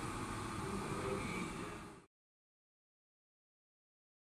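Steady background room noise with a faint hum, which cuts off abruptly into total silence about two seconds in.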